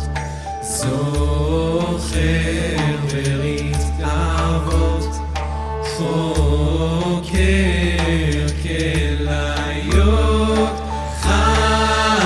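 Live worship band music with a male voice singing in Hebrew over the band.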